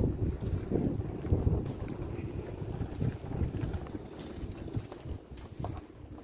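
Wind buffeting the camera microphone outdoors: an uneven, gusty low rumble that eases off in the second half.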